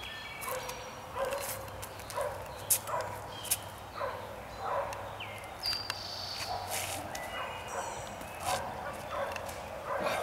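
An animal giving short barking calls over and over, with birds singing high above and a couple of sharp clicks about three seconds in.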